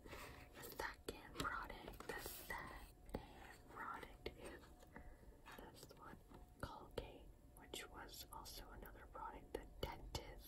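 A woman whispering softly, with scattered small clicks throughout.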